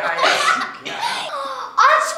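A girl laughing.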